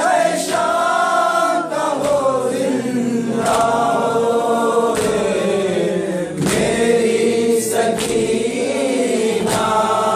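A group of male voices chanting a noha in unison, with a sharp chest-beating strike (matam) about every second and a half keeping time.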